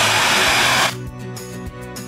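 Hair dryer with a diffuser attachment blowing loudly, cutting off suddenly about a second in, leaving background music.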